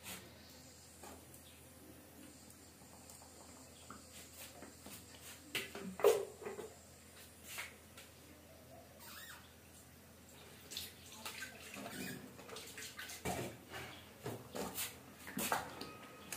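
Thick blended tomato and pepper purée poured from a plastic blender jug into a pan, with a sharp knock about six seconds in. Near the end a spatula stirs the pan, clicking and scraping against it.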